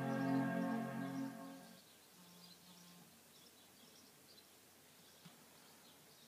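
Apple iMac startup chime: a single sustained chord rings out as the computer powers on, then fades away within about two seconds, with a low note lingering a little longer.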